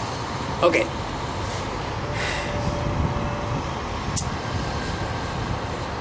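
Steady low rumble of city street traffic and outdoor background noise, with a faint steady hum in the middle and a single short click about four seconds in.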